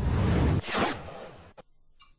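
Broadcast transition sound effect: a loud swoosh lasting about a second and a half, heaviest at the start, followed by a single sharp click.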